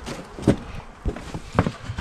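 A few sharp knocks and clunks from handling a plastic five-gallon bucket as its lid is pulled off, the loudest about half a second in and another about a second and a half in.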